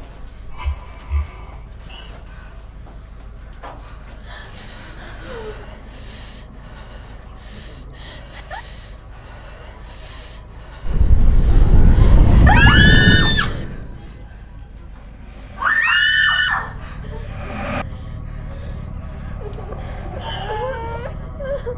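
Children screaming over a loud, deep rumble, with soft film music underneath. The first long scream starts about eleven seconds in and lasts about two and a half seconds; a second, shorter scream follows a few seconds later.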